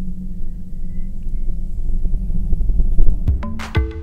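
Low, steady rumble of a de Havilland Turbine Otter's turboprop engine heard from the cockpit, growing louder as the plane departs. About three seconds in, music with sharp mallet-percussion strikes comes in over it.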